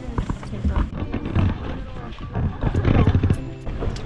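Horse's hooves clip-clopping as it pulls a wagon, with a run of quick knocks and rattles from the moving wagon.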